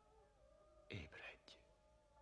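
A short whispered utterance about a second in, over faint sustained background music.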